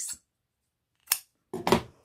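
Scissors snipping through T-shirt-yarn cord: a short sharp snip about a second in, then a longer, louder cut near the end.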